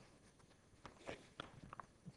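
Near silence: room tone with a few faint taps or knocks between about one and two seconds in.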